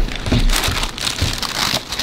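Cardboard shoebox being opened and the tissue paper inside rustling and crinkling as hands dig through it, with a dull knock of the box at the start.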